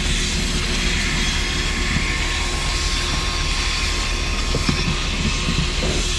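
Public self-service car wash vacuum running, its hose nozzle pulling air hard at the side of a car seat: a steady rushing hiss with a faint steady whine underneath.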